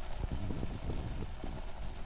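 A pot of chicken drumsticks steaming on tomato and onion in their own juices, the broth bubbling with irregular small pops over a steady low rumble.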